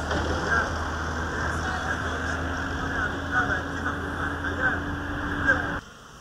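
Outdoor site sound: a steady rumbling noise with faint voices, and a steady engine hum joining about two seconds in; it cuts off abruptly near the end.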